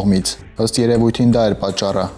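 A man narrating in Armenian in a steady news-reader voice, with a short pause about half a second in.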